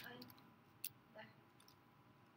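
Near silence broken by a few faint computer-keyboard key clicks: a sharp one at the very start and another a little under a second in.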